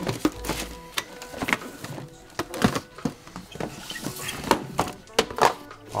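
Sneakers and cardboard shoeboxes being handled and set down: a scattered string of light knocks and thunks, over background music.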